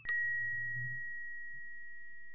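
A single bright ding sound effect, struck once at the start and left ringing as one clear high tone that fades slowly.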